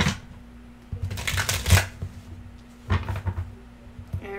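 A deck of tarot cards being shuffled by hand. A sharp snap comes right at the start, then two rustling bursts of shuffling: a longer one about a second in and a shorter one near the end.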